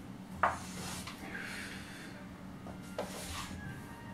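Two light knocks about two and a half seconds apart, each followed by a brief rush of noise, over a steady low hum.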